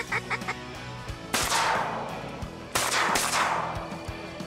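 A few quick duck-call notes, then two shotgun shots about a second and a half apart, each trailing off in a long echoing fade.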